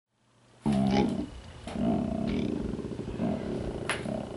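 A deep, rough roar, like a big cat's growl: a short one about half a second in, then a longer, rasping one from a little under two seconds in.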